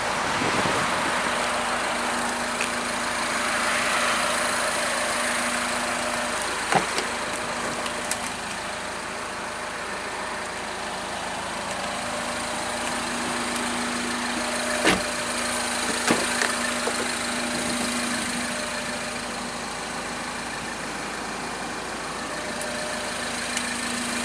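Steady hum of an idling car engine, with a steady low tone that drops out for about six seconds and then returns. There are a few sharp clicks, about 7 and 15 seconds in.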